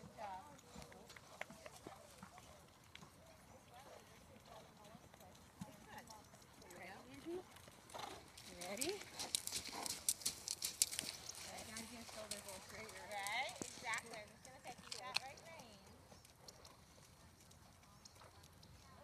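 Horse's hooves striking the sand of the arena, loudest as a series of sharp hoofbeats about eight to eleven seconds in, when a horse passes right by.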